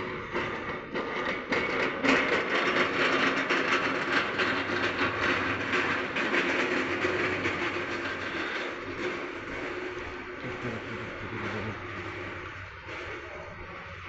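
Continuous rattling, rolling machinery noise from warehouse handling equipment, loudest in the first half and fading toward the end.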